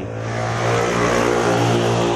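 A motor vehicle's engine revving, with a rushing noise that swells and then fades over about two seconds.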